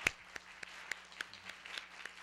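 Audience applauding in a hall, with one pair of hands clapping close by about three to four times a second above the rest. A single sharp, loud clap comes right at the start.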